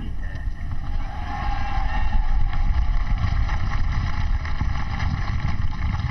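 Large outdoor crowd applauding and cheering, a dense crackle of clapping with rumbling wind noise on the microphone; it swells about two seconds in and eases near the end.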